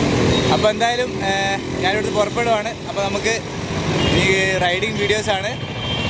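Men talking, with road traffic running in the background.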